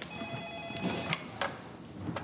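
An electronic telephone ringing: several steady tones sound together for about a second, then stop. A few light clicks follow.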